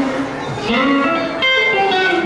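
Live band music with an electric guitar playing changing notes, some sliding upward, and a fresh attack about a second and a half in.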